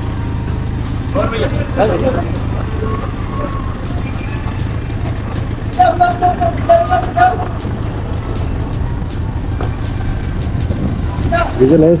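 Motorcycle engine running steadily at road speed, with a string of short, higher-pitched toots about six seconds in.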